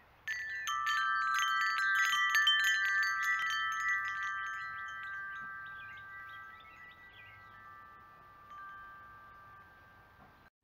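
Wind chimes ringing. A cluster of several clear metal tones is struck over and over for about four seconds, then left to ring and slowly fade.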